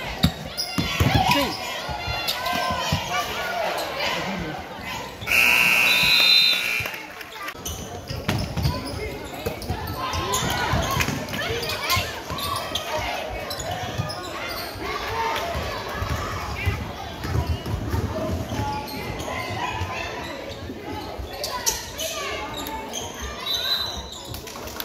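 A basketball dribbling and bouncing on a hardwood gym floor, with spectators' voices echoing in the gym. About five seconds in, a referee's whistle blows loudly for about a second and a half, and a short whistle sounds again near the end.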